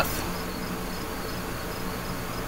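Steady background hiss and low hum, with a faint high chirp repeating a few times a second.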